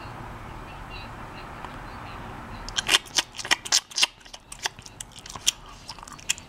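Steady low hiss, then from about three seconds in, a run of sharp, irregular crunching clicks of someone chewing food close to the microphone.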